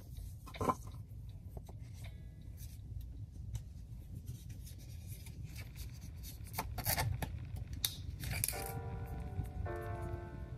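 Paper wrapping rustling and small plastic clicks and taps as a compact camera and its battery are handled, with one sharper click about a second in. Soft pitched music notes come in near the end.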